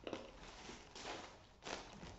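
Plastic bags rustling and crinkling as they are handled, in three short bursts: at the start, about a second in, and near the end.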